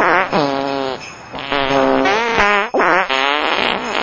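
Fart noises pitched and played as a tune: a run of buzzy notes, each held under a second, with short gaps between them and the pitch bending at the ends of some notes.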